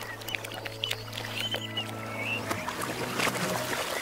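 A cartoon soundtrack played in reverse: a low held musical note with overtones that fades out about two and a half seconds in, with scattered light clicks and a few short high chirps over it.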